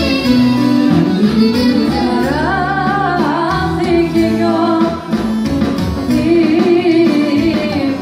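Live Greek folk dance music from a band with a clarinet and a singer, amplified through PA speakers in a large hall. It is loud and continuous, with an ornamented melody line rising and falling about halfway through.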